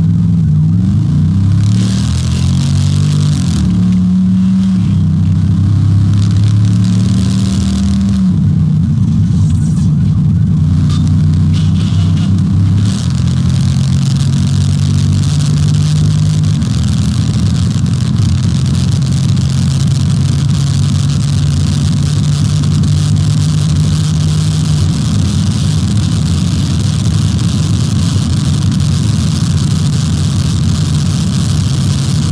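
Police car's engine accelerating hard through its gears, its pitch stepping up and dropping at each shift in the first few seconds. It then holds a steady note at very high speed, with loud wind and road noise.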